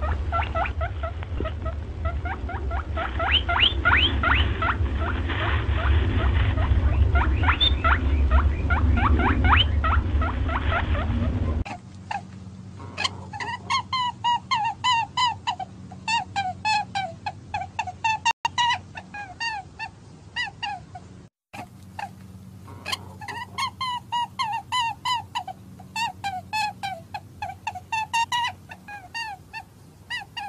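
Small animals squeaking in rapid, dense calls over a low rumble. About twelve seconds in it changes abruptly to a clearer run of repeated chirping calls, several a second, broken by a brief gap a little past twenty seconds.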